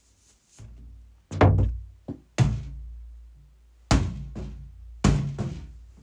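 An inflated rubber balloon bumping against the phone and its microphone: about five dull thuds, each followed by a short low ring as it dies away.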